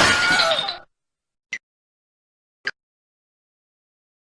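A loud glass-shattering crash sound effect lasting under a second, followed by two short clicks about a second apart.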